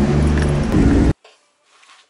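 Nissan Skyline R32 GTST's RB25DET turbocharged straight-six running just after being started, heard from inside the cabin. The sound cuts off suddenly about a second in.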